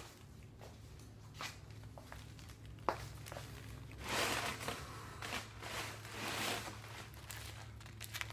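Footsteps and rustling handling noise as a person comes up to the camera and settles into a wicker chair, with a sharp click about three seconds in and louder rustles around four and six seconds. A low steady electrical hum runs underneath.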